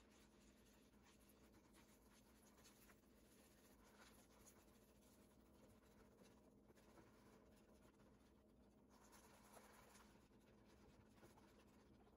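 Near silence, with faint, irregular scratching of a hand wire whisk stirring thick cake batter against the sides of a plastic mixing bowl.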